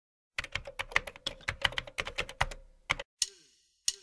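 Rapid typing key clicks, about seven a second, for about two and a half seconds, then a few separate clicks near the end.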